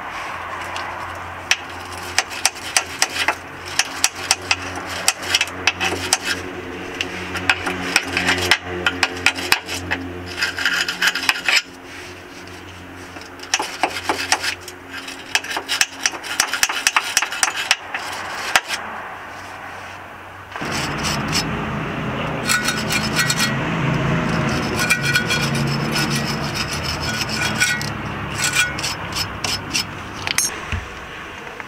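Stiff bristle brush scrubbed back and forth over dirty steel suspension parts, rapid repeated scratching strokes as the mounting area is cleaned of dirt. About two-thirds of the way in, the scrubbing turns louder, lower and denser.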